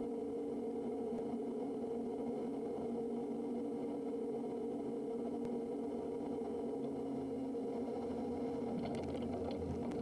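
Steady drone of the Kodiak 100's turboprop engine and propeller during touchdown on a grass strip, even in level, with a slight shift in its low hum about seven seconds in.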